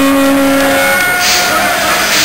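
A horn holds one long steady note that stops about a second in, then sounds a shorter, higher note, over loud crowd noise.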